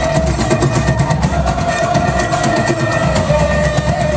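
Live rock band playing an instrumental passage: one long held note rings over steady drum hits and bass, all at full loudness.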